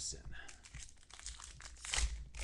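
Trading card pack wrapper crinkling as it is handled and torn open: a run of quick, sharp crackles that grows densest near the end.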